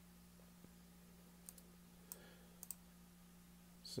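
A few faint computer mouse clicks over near silence with a low steady hum; two of the clicks come close together a little past the middle.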